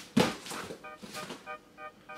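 A single thunk as a cardboard shipping box is handled, over background music of short repeating notes.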